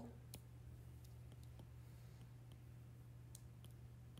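Near silence: a low steady hum with a few faint, sharp clicks, the taps of a stylus drawing on a tablet.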